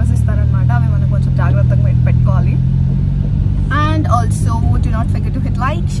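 Steady low hum of a car running, heard from inside the cabin under a woman's talking.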